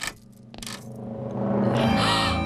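A sharp metallic click and rattle of the front-door latch as the door is opened, with a second click shortly after. Background music then swells in and grows steadily louder.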